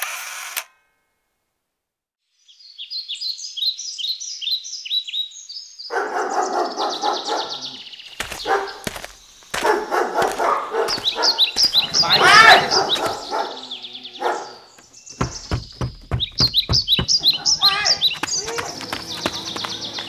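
Birds chirping in quick, repeated high calls, followed by a dog barking amid other yard sounds.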